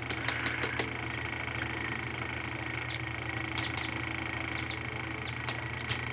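A steady low mechanical hum, with a quick run of light clicks or taps in the first second as the bamboo cage roof is handled, and faint short high chirps scattered through.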